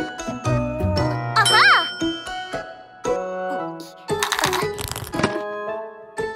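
Cartoon sound effects over light children's music: bell-like dings and tinkling jingles, a short swooping pitched sound a little over a second in, and a shimmering rattle from about four to five seconds.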